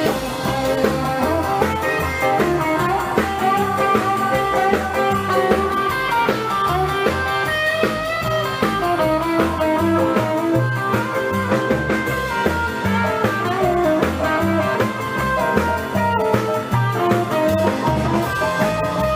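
Live band playing an instrumental passage: electric guitar to the fore over upright double bass and drums.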